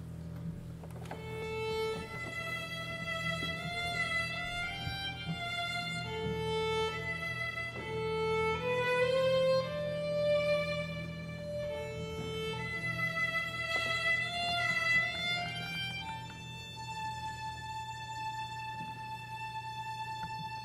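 A solo violin playing a slow melody, note after note, over a steady low hum, and settling on a long held high note for the last few seconds.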